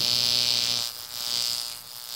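High-voltage AC electric arc between brass electrodes and a hanging steel ball, buzzing steadily with a hiss on top. The buzz dips briefly about a second in and again near the end as the electrodes are swung, but the arc keeps burning.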